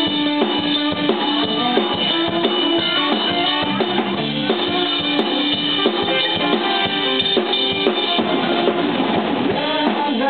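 Live rock band playing an instrumental passage: drum kit keeping a steady beat under electric bass and electric guitar.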